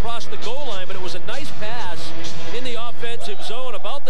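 Speech: television hockey commentators talking, not picked up by the transcript.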